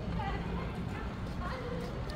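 City street ambience: a steady low rumble with faint, indistinct voices of people nearby.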